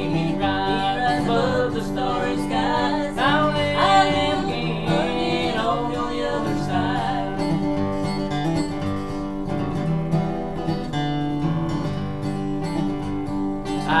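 Acoustic guitar strummed through a bluegrass gospel instrumental break, a steady strum with melody notes over it; singing comes back in at the very end.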